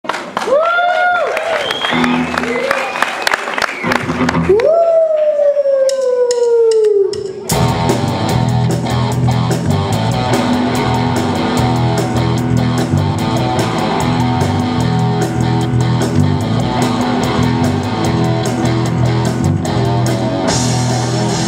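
Teenage rock band playing live: an electric guitar alone plays bending, gliding notes that end in a long falling slide, then about seven and a half seconds in the full band comes in with drums, bass and electric guitars playing a steady rock beat.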